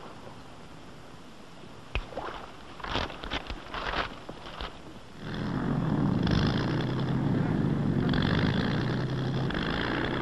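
Propeller aircraft engine droning steadily, coming in about halfway through and holding level. Before it come a few faint scattered knocks and scuffs.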